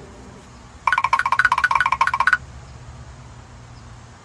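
A bell-like ringing tone trilling rapidly, about a dozen pulses a second, for about a second and a half, starting about a second in.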